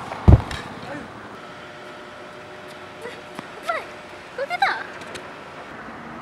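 A single heavy thump a moment in, then steady open-air background noise broken by a few short vocal cries near the middle.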